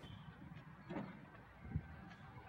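Faint low background noise with two dull thumps, a soft one about halfway and a stronger, deeper one near the end.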